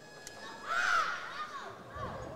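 A shout of a human voice, one drawn-out call that rises and then falls in pitch, lasting about a second.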